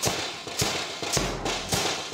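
Brass band's drums, including a bass drum, beating a steady rhythm of about two strokes a second while the horns rest.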